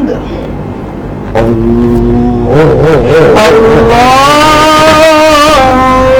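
A man's voice chanting one long, drawn-out phrase, starting about a second and a half in, its pitch wavering and then rising: the imam's chanted call during congregational prayer.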